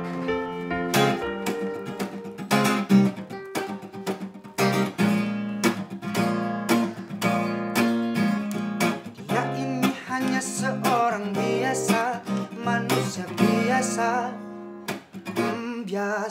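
Acoustic guitar being strummed and picked in a steady chord pattern, accompanying a song.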